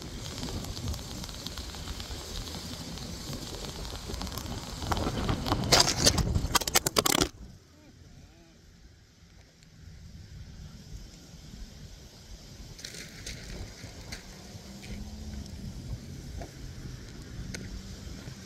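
Wind and road rumble on a bicycle-mounted phone while riding, then a burst of rattling knocks about five seconds in as the phone shifts in its loose handlebar mount. Just after seven seconds the sound cuts off sharply to a muffled hush that slowly builds again.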